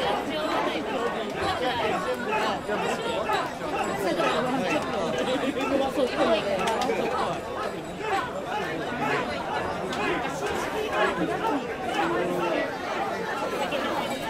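Dense crowd chatter: many voices of festival bearers and onlookers talking at once in a steady, overlapping babble.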